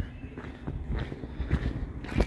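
Footsteps on concrete: a few soft, uneven steps.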